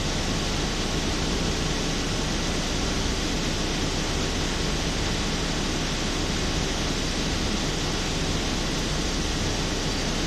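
Steady rushing noise, even and unbroken, with a low hum beneath it.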